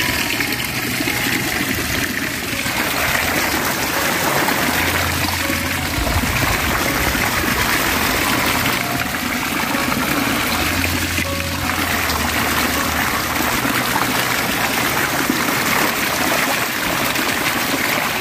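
Steady rush of flowing stream water, with background music under it.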